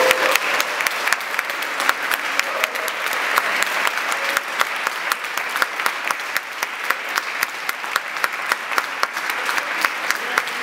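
Audience applause: many hands clapping densely and evenly, straight after the final held note of the choir's song cuts off at the very start.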